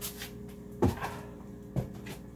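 Footsteps: two heavy thuds about a second apart, over a steady low hum.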